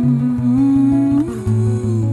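A woman humming a wordless melody, a held note that steps up in pitch a little past halfway, over a fingerpicked nylon-string acoustic guitar.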